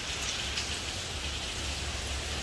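Steady hiss of rain falling, with a low hum underneath.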